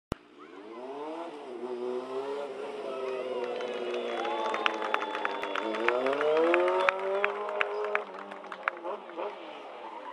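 Sport motorcycle engine revving during stunt riding, its pitch rising and falling repeatedly and loudest a little past the middle, with a scatter of sharp clicks at the peak revs before it drops away near the end.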